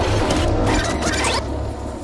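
Trailer sound effects: a quick run of sharp, mechanical-sounding clicks and swishes over a low rumble, which stops about a second and a half in.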